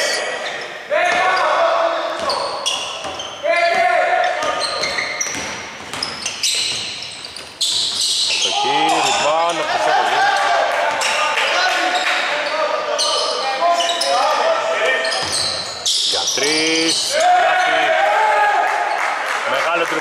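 Basketball bouncing and dribbling on a hardwood court, with players' shoes and voices on the court, echoing in a large, mostly empty indoor arena.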